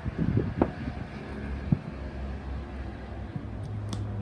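Handling noise from small vinyl toy figures being touched and shifted on a cloth: a few soft knocks in the first second, single clicks later on and one sharp click near the end, over a steady low hum.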